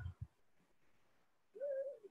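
Near silence on the call line, broken by two brief low sounds at the start and a short hum-like voice tone near the end, just before speech resumes.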